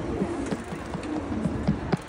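Street ambience on a paved plaza: low, wavering cooing calls of a bird over a steady background hum, with a quick run of short steps or taps.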